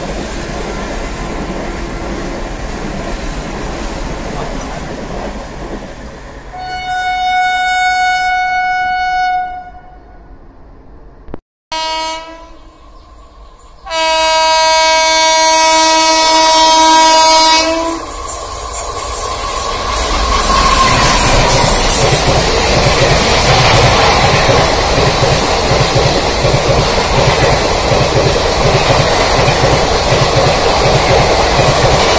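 Indian Railways express coaches run past at speed, with a locomotive horn held for about two and a half seconds partway through. After a break, an approaching WAP-4 electric locomotive sounds a short horn blast, then a long one of about four seconds. Its train then rushes past at full line speed, wheels clattering over the rail joints, growing louder to the end.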